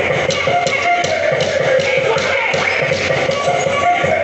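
Upbeat dance-workout music with a steady beat, played loud.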